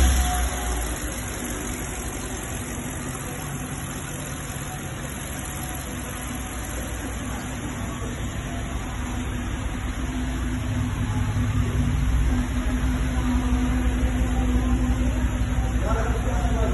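BMW X6 engine idling steadily just after being started, getting louder in the second half as the exhaust is approached.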